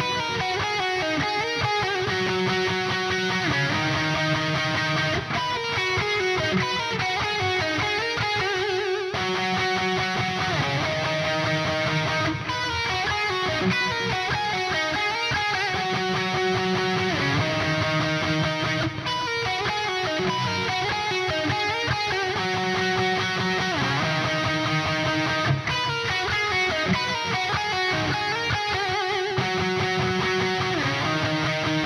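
Valiant Jupiter electric guitar with Bare Knuckle Riff Raff humbuckers, played through a Revv Generator 120 MKIII amp: a repeating riff that comes round about every six and a half seconds. The humbuckers are wired with the bridge in single-coil mode and the neck in parallel, then switched to series mode on both partway through.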